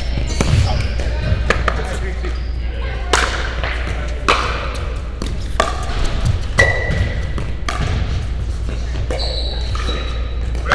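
Pickleball paddles hitting a hard plastic pickleball back and forth in a doubles rally: sharp pops at irregular intervals, roughly one a second, over a steady low hum.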